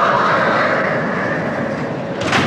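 Steady rolling rumble of something heavy moving on wheels, fading slowly.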